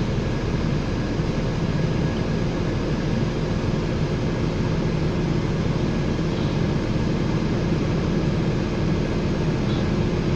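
Steady drone heard inside the cabin of a Nova LFS low-floor city bus, the engine and running noise of the bus itself, with no sharp events.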